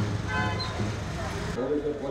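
Street noise: a steady traffic rumble with a short horn toot about a third of a second in. Near the end the sound cuts abruptly to a man speaking.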